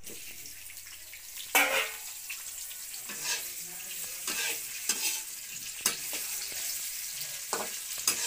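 Sliced vegetables frying in a kadhai with a steady sizzle, as a spatula stirs them, scraping and knocking against the pan about once a second; the loudest knock comes about one and a half seconds in.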